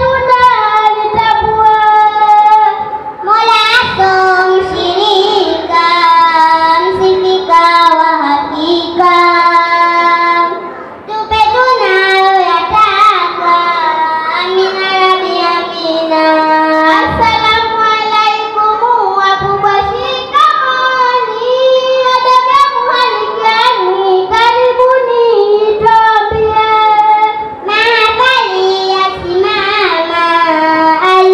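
Young girls singing a Swahili utenzi (a verse poem) into microphones, a continuous sung melody with one brief pause about ten seconds in.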